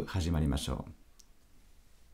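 A man speaking for about the first second, then a short, faint click a little over a second in.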